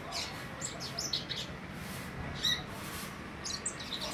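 Caged songbird giving short, high chirps in three quick groups: one in the first second or so, a brief one past the middle, and one near the end.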